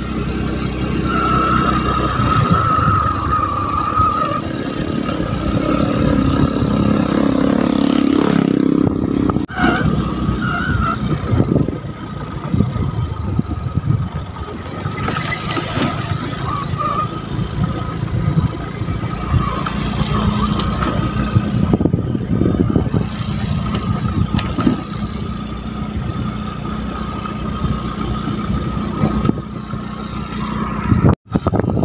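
Motorcycle engine running steadily as the bike is ridden along an unpaved dirt road.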